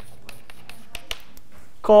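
Chalk writing on a blackboard: a quick, irregular run of short sharp taps and clicks as the strokes go down, several a second. A man's voice starts near the end.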